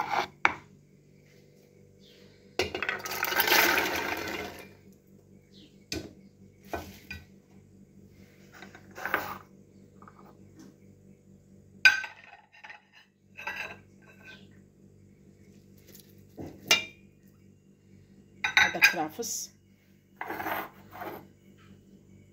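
Chickpeas poured into a stainless steel pot: a rattling rush about three seconds in that lasts about two seconds, followed by scattered sharp clinks and knocks of bowls and utensils against the metal, over a faint steady hum.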